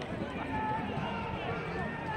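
Steady chatter of many overlapping voices from a sparse stadium crowd, with no single voice standing out.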